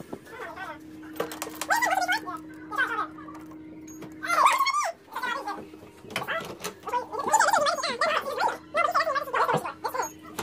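Indistinct voices in short stretches over a steady low hum.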